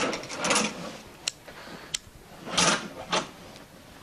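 Household handling noises as a room is opened up to air: two rustling swishes with a few short, sharp clicks between them, like curtains pulled back and a window catch worked.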